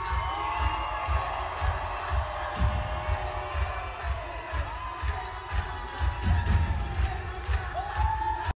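Live stage music from a theatre band, with a steady pulsing beat and long held notes, while the audience cheers over it.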